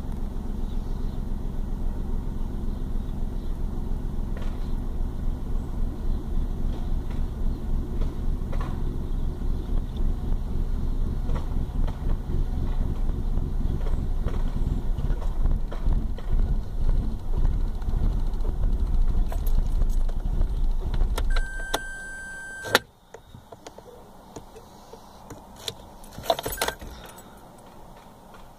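Corsa C's 1.0-litre Z10XE three-cylinder engine idling at about 1000 rpm, then switched off about three-quarters of the way through. As it stops, a high steady tone sounds for about a second and a half, followed by a sharp click. Keys rattle near the end.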